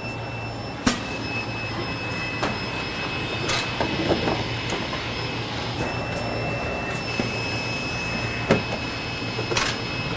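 SWF Model IT4 automatic tray former running, erecting trays at 12 a minute: a steady machine hum with a thin high whine, broken by sharp clacks every few seconds as its mechanism cycles. The loudest clacks come about a second in and near the end.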